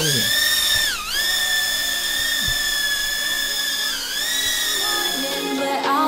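URANHUB UT10 palm-sized toy quadcopter's motors and propellers whining high and steady as it lifts off and hovers, the pitch dipping briefly about a second in and again about four seconds in as the throttle changes. Music comes in near the end.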